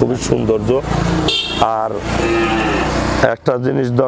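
Men talking, with a loud stretch of motor-vehicle noise from about a second in until near the end, which covers the voices.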